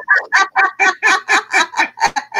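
A woman laughing loudly, a steady run of short 'ha' pulses at about four a second.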